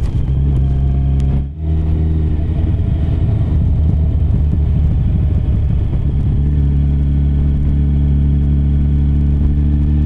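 2018 Yamaha FJR1300's inline-four engine running at a steady cruise, mixed with road noise. The sound briefly dips about a second and a half in, then carries on at an even pitch.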